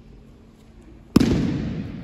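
A judoka thrown with a hip throw lands on the tatami: one loud slap of the breakfall about a second in, fading away briefly in the hall.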